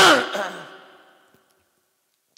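A man's voice through a microphone: one loud, drawn-out vocal sound right at the start, falling in pitch and fading away over about a second.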